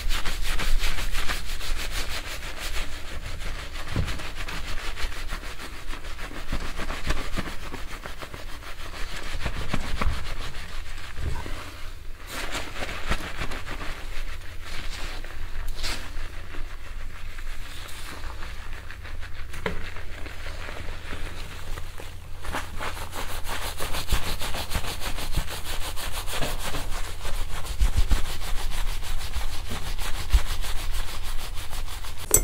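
Close-miked rubbing and scratching of a wire scalp massager's prongs working through a wig's hair. The rustling is continuous, softer through the middle stretch and fuller near the start and end.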